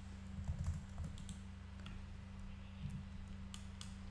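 Scattered clicks of a computer mouse and keyboard, several of them spaced irregularly, over a steady low hum.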